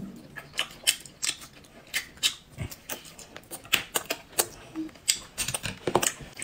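Close-up chewing of grilled meat from a skewer: an irregular run of short, sharp mouth clicks and smacks, a few each second.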